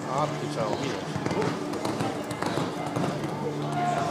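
Indistinct voices talking, with scattered light knocks.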